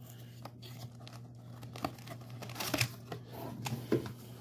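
A cardboard box being opened by hand: scattered scratching and tearing as the lid's tab is worked free and the flap lifted, busiest about three seconds in, with a sharp click just before the end.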